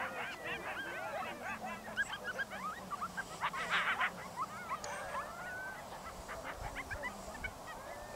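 A group of coyotes yipping and howling together, a chorus of many overlapping short yelps and wavering calls that rise and fall in pitch. It is busiest about halfway through, then thins out and fades toward the end.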